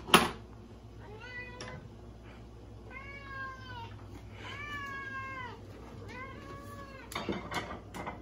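Tabby cat meowing four times, the third call the longest, begging to be fed tuna. A sharp knock just at the start and a few clicks near the end.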